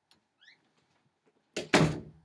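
A faint click and a brief rising squeak, then a loud sudden double thump near the end.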